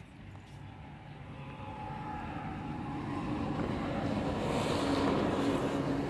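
A motor vehicle's engine and road noise, growing steadily louder as it approaches over several seconds.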